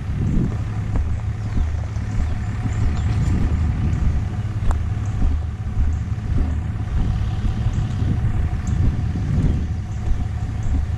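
Motor vehicle driving slowly along a rough dirt track: a steady low engine and drivetrain rumble with a faint steady whine above it.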